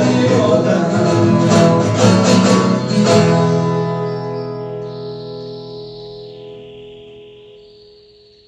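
Viola caipira and acoustic guitar strumming the closing bars of a moda de viola, ending on a final chord about three seconds in that rings on and slowly fades away.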